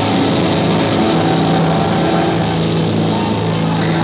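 Live heavy rock band playing loud, distorted guitars and bass, settling into a low, droning held note about a second in, over drums.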